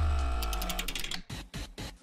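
Short musical transition sting: a deep bass tone under a held, ringing chord that fades out about a second in.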